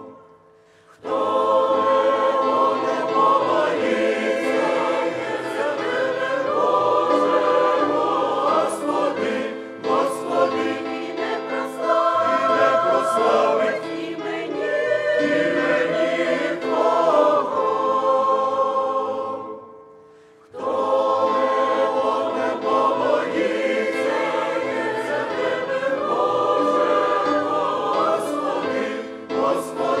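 Mixed church choir of men's and women's voices singing a Ukrainian hymn in sustained phrases. The singing breaks off briefly during the first second and again about twenty seconds in.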